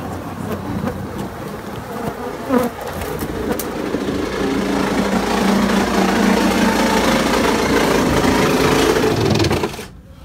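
A swarm of Africanized honey bees buzzing loudly close around the microphone, the buzz swelling in the second half and dropping away sharply just before the end, with one brief knock early on.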